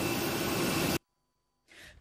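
Steady noise of a parked jet airliner on an airport apron, a hum with a faint high whine, that cuts off suddenly about halfway through. Silence follows, with a brief faint hiss near the end.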